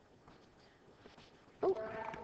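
Near silence, only faint room tone, for about a second and a half. Then a woman's drawn-out "Oh".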